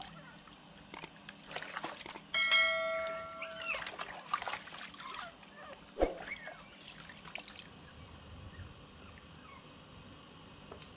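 Water splashing and trickling in a plastic basin as hands rinse a small puppy. About two seconds in, a couple of clicks and then a bright bell-like ding ring out and fade over about a second, the sound of a subscribe-button overlay. A single knock follows about six seconds in.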